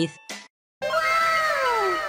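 A cartoon sound effect begins about a second in, after a brief dead-silent cut: several drawn-out pitched tones overlap, each sliding steadily downward in pitch.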